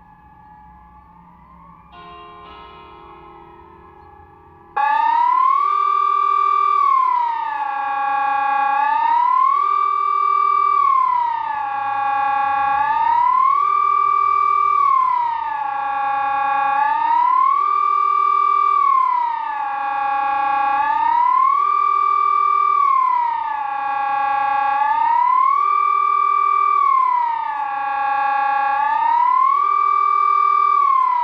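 Sonnenburg SES 1000 electronic civil-defence siren sounding the Swiss 'General Alarm' signal. It starts suddenly about five seconds in with a loud tone that rises and falls steadily, about once every four seconds.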